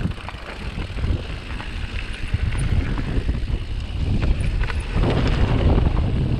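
Wind buffeting the microphone as a mountain bike rolls fast down a rocky gravel trail, with tyre crunch and scattered clicks and knocks from the bike over the stones. The rumble grows louder about five seconds in.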